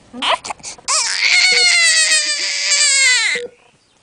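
A newborn baby crying: a few short cries, then one long wail that falls in pitch as it ends. A faint short beep sounds every couple of seconds.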